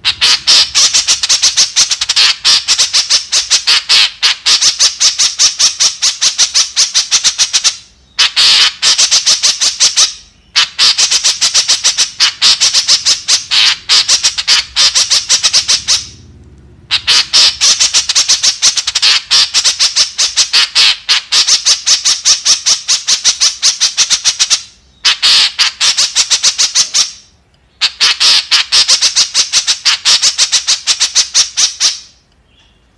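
White-breasted woodswallow (kekep) calling: long runs of rapid, high-pitched repeated notes, many a second, broken by about five short pauses of under a second.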